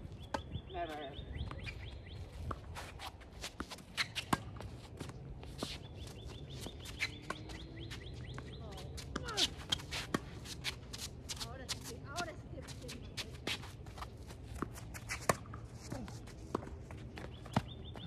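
Tennis rally on an outdoor hard court: the sharp pops of racket strings hitting the ball and the ball bouncing, with scuffing footsteps on the court.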